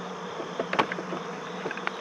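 Honeybees buzzing around the hive in a steady hum, with a few light clicks near the middle and end.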